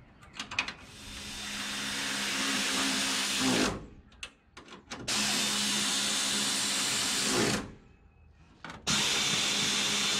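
Cordless power driver running bolts in: three runs of two to three seconds each with a steady motor whine, the first one building up as it spins up.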